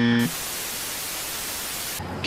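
A loud, steady hiss of TV-style static white noise, used as an edit sound effect. It starts a quarter second in, right after a held buzzing tone cuts off.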